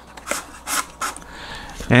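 Wooden barbecue skewer being pushed through a foam-board FPV pod, a few short, irregular scrapes and rubs of wood against foam and paper.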